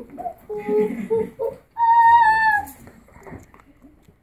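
A young child's high-pitched wordless voice: a few short calls, then one loud, longer high call that dips in pitch at its end.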